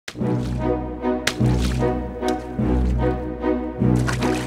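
Background music: sustained bass notes changing about every second and a quarter under a steady pitched accompaniment, with a sharp hit at the very start and another just over a second in.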